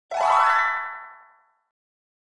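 Short intro sound effect: one ringing tone that slides up in pitch at the start and fades away within about a second and a half.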